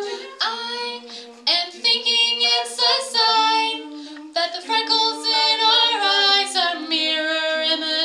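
All-female a cappella group singing unaccompanied: several women's voices in close harmony, the parts moving together through changing notes.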